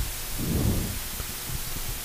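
Faint steady background hiss with no distinct event, and a brief low murmur about half a second in.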